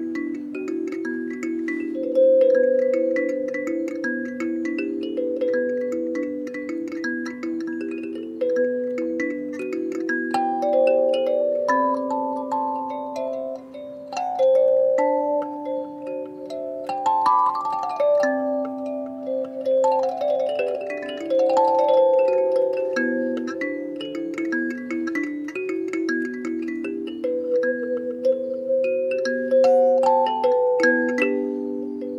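Kalimba played with the thumbs: metal tines plucked in a repeating pattern of low and middle notes that ring on over one another. Through the middle of the passage higher notes are added above the pattern, then the playing settles back into the lower figure.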